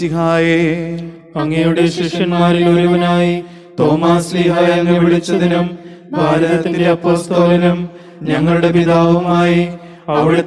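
A man's voice chanting a liturgical prayer on long held notes, in four phrases of about two seconds each with short breaks between.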